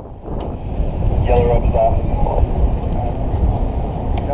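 Wind buffeting a helmet-mounted action camera's microphone, a loud uneven rumble, with muffled voices and a few faint clinks of rigging gear.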